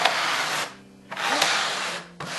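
Plastic epoxy spreader scraping across adhesive-coated fiberglass weave on EPP foam, spreading spray adhesive in two strokes, the second longer.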